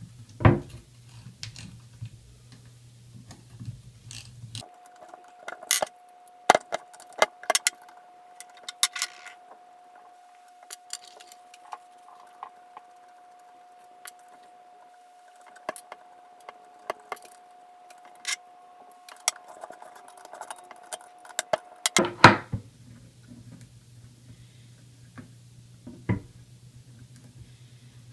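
Irregular metallic clicks and clinks of a small ratchet with a Torx T25 socket and loose steel bolts as the bolts are backed out of a transmission valve body's accumulator plate and set down on a tabletop. A faint steady tone runs underneath for much of the middle.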